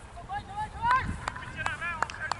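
Players' voices calling out across a cricket field between deliveries, with several sharp clicks in the second half.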